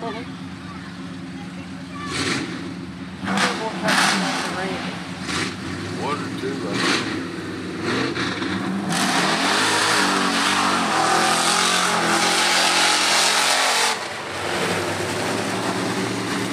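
Mud-bog pickup truck engine revving several times at the start line, then held at full throttle for about five seconds as the truck runs through the mud pit with its tires spinning. The engine eases off near the end.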